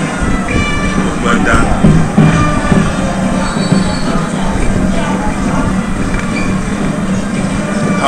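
Football stadium crowd noise from the stands: a steady low drone, with music and brief pitched calls mostly in the first few seconds.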